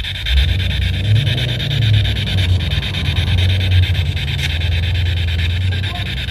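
Spirit box sweeping through radio frequencies: a steady, rapidly chopped rasping static with a low hum underneath.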